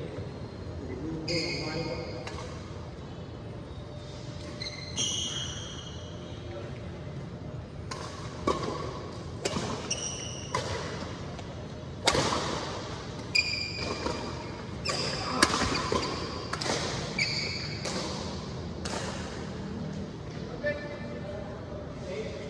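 Badminton rally: racket strings hitting the shuttlecock in sharp, echoing smacks, about one a second from about 8 to 19 seconds in. Short high squeaks of court shoes on the floor are heard throughout.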